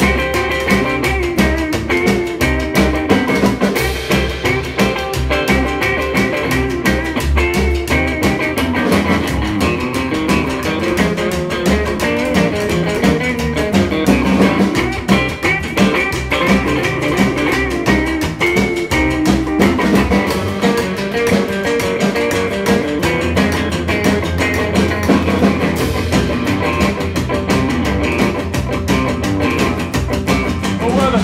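Instrumental break of a rockabilly song played by a small live band: an electric guitar leads over a plucked upright double bass, a strummed acoustic guitar and a snare drum with cymbal, at a steady, driving beat.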